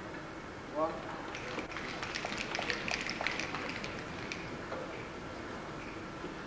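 A short voice call, then about three seconds of scattered hand-clapping from a small crowd of spectators.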